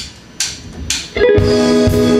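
Three sharp taps about half a second apart, then a live band comes in a little after one second with a loud, held chord.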